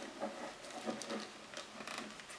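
Quiet, scattered clicks and scratching of fingers working a 9-volt battery's snap connector onto its terminals, with the plastic multimeter case being handled.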